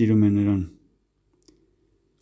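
A man reading aloud in Armenian, his voice trailing off about two-thirds of a second in, then a pause of near silence broken by one faint click about halfway through.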